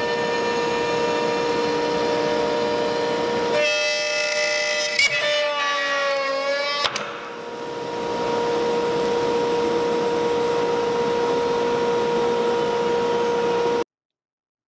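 CNC router spindle running with a steady high whine. About four seconds in the tone wavers and sags under load as the bit cuts into the edge of the board, with a sharp knock near the middle and another about seven seconds in as the wedges holding the workpiece are kicked out. The steady whine then returns.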